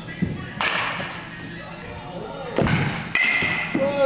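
A handful of sharp thuds and cracks in a baseball batting-cage hall, the loudest pair about two and a half to three seconds in, each followed by a short echo: baseballs striking gloves and netting during pitching practice.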